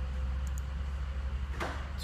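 Ford F-550's turbo-diesel V8 idling, heard as a low steady drone, while cylinder number three is reading as a weak contributor.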